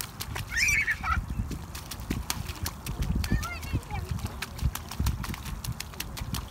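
A young child's short, high-pitched call just under a second in, and fainter high chirps about three seconds in, over a run of irregular sharp clicks and taps and a low rumble of wind on the microphone.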